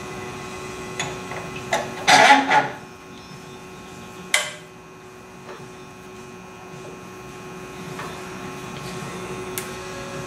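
Metal clicks and a short scraping rattle, loudest about two seconds in, as a wire is worked through the coils of a door hinge spring held compressed in a bench vise. A sharp click follows a couple of seconds later, then a few faint ticks, over a steady low hum.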